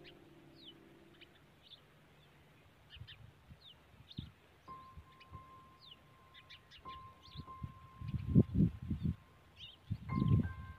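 Soft background music with long held tones, over many short, quick bird chirps repeating throughout. Near the end a few loud, low thuds stand out above both.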